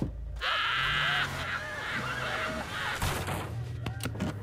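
A horse's laugh-like call: a loud honking cry about a second long just after the start, followed by quieter, shorter vocal sounds.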